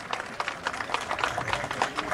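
Applause from a small crowd: many irregular hand claps overlapping.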